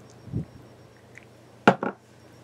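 Small hard objects being handled and set down on a hard surface: a soft dull thump, then, a little over a second later, two sharp clicks in quick succession, the first the louder.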